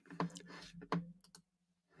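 A few faint, short clicks in a pause between spoken phrases, over a low steady hum.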